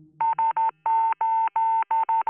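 Morse code radio tone: a single steady mid-pitched beep keyed in three short pulses, then three long ones, then short again, the SOS distress pattern, sounding thin as if heard over a radio set.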